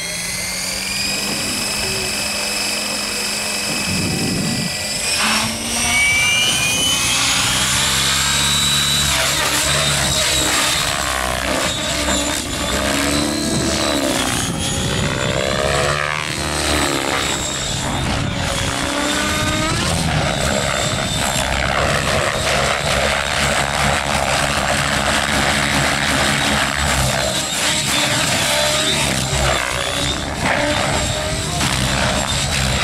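Radio-controlled helicopter spooling up with a rising whine from its motor and rotor, then flying, the whine wavering up and down in pitch as it manoeuvres.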